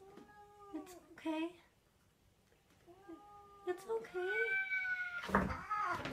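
Two hairless cats in a standoff, yowling at each other in long, drawn-out caterwauls: one call in the first second and a longer, wavering one from about 3 s, ending in a sudden loud noisy outburst near the end.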